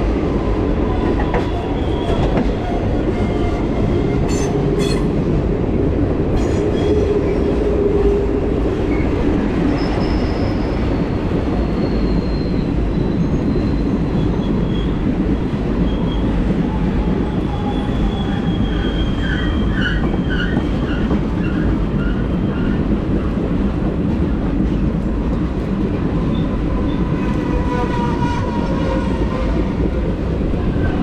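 Passenger train wheels rolling on the rails, heard from the open rear platform of the last car: a loud, steady rumble. Faint wheel squeal comes and goes on the curving track.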